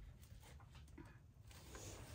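Near silence: a faint low room hum with a few faint ticks.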